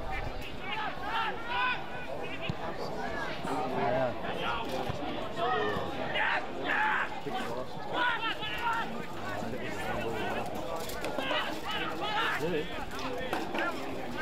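Players and spectators shouting and calling over one another during a game of Australian rules football, several voices at once with no clear words.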